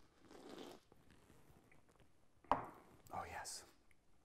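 Faint sipping of a cocktail packed with crushed ice, then a sharp knock about two and a half seconds in as the glass is set down on a wooden board, followed by a short breathy mouth sound.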